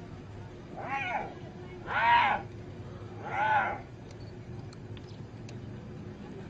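Three high-pitched, arching cries from an injured hyena being attacked by lions, each about half a second long, the second one the loudest.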